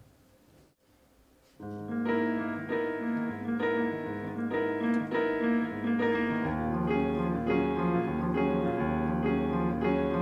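Petrof grand piano played solo, opening a jazz piece with slow, held chords after about a second and a half of near silence. Deeper bass notes join the chords a little past halfway.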